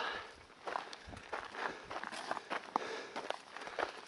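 Soft footsteps of a hiker walking on a dry, rocky dirt trail, a run of short, uneven crunching steps.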